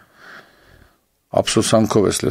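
A man's in-breath close to a microphone, faint and just under a second long, taken in a pause between phrases; his speech resumes about a second and a half in.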